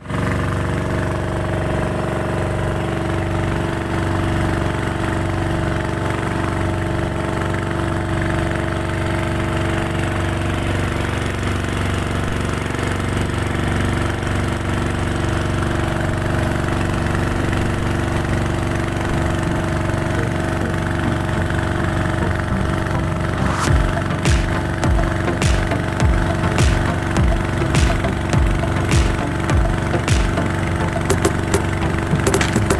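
Small outrigger fishing boat's engine running steadily underway. In the last few seconds, sharp regular thumps come in, about two a second.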